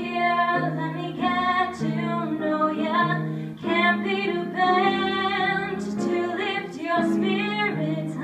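A woman singing a musical-theatre song solo, with piano accompaniment holding chords beneath the melody.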